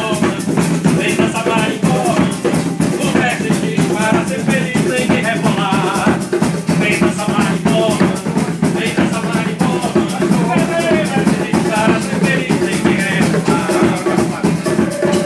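Live band music in the marimbó rhythm: keyboard, bongos and acoustic guitar over a shaker rattling steadily, with a wavering melody line on top.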